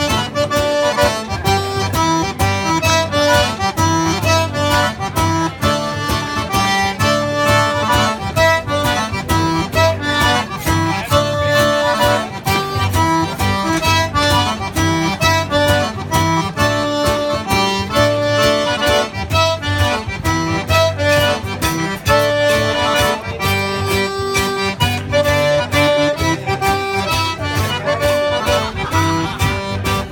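Zydeco band playing live, the accordion carrying the melody over guitar and a steady dance beat.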